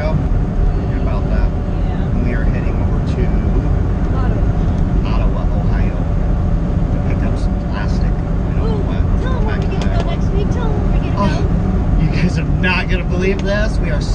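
Steady low drone of a semi truck's engine and road noise heard inside the cab while driving.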